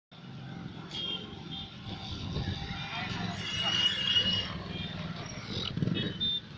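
Street ambience: indistinct voices of people talking, mixed with passing traffic. It is busiest about halfway through.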